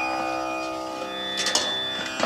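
Indian classical-style background music on plucked strings over held, steady notes, with a couple of sharp strikes about one and a half seconds in.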